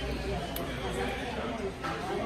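Indistinct talk and chatter in a restaurant dining room, with a couple of light clicks.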